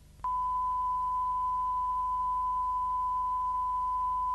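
A steady, single-pitch line-up test tone on a videotape recording, starting a moment in over a faint low hum.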